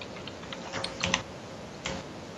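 Typing on a computer keyboard: a few scattered key clicks, clustered about a second in, with one more near the end.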